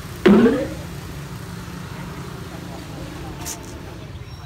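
Outdoor street ambience with a steady low rumble of traffic. About a quarter second in comes a loud, brief sound that rises in pitch over half a second, and near the end a short high hiss.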